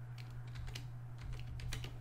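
Computer keyboard typing: a quick run of faint keystrokes over a low, steady hum.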